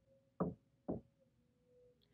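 Two dull knocks about half a second apart, over a faint steady hum.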